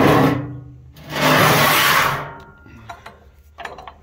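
Sheet-steel ash pan of an outdoor wood furnace scraping metal on metal as it is slid back into its compartment: a short scrape at the start, then a longer one about a second in, followed by a few light clicks.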